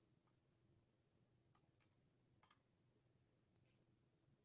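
Near silence, with a few very faint clicks.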